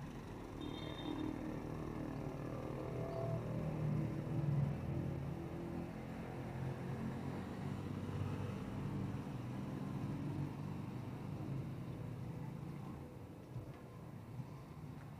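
Street traffic: a motor vehicle's engine running close by, swelling to its loudest about four to five seconds in, then a steady low hum.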